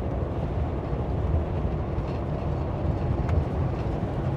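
Steady low road and engine rumble heard inside the cab of a Class C motorhome cruising at highway speed.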